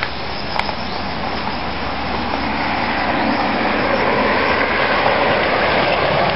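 A road vehicle passing on the nearby highway: a steady rumble of engine and tyre noise that grows gradually louder as it approaches.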